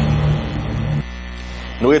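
Steady electrical mains hum on the broadcast sound track. A low held tone sits over it and cuts off suddenly about a second in. A man's voice starts just before the end.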